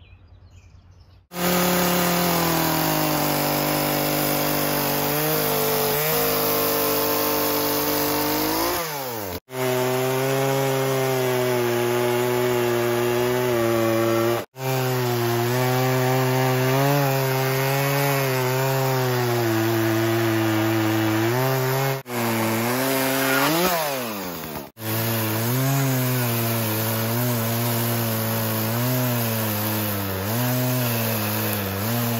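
Poulan Pro 18-inch two-stroke chainsaw cutting into a wooden log, starting about a second in. Its engine pitch sags under load and rises again as it revs free. The sound breaks off for an instant four times.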